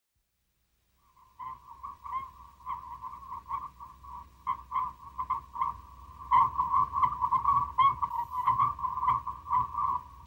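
A steady high electronic tone that flutters and pulses, with faint irregular clicks and a low hum beneath it, starting about a second in and growing louder a little past the middle.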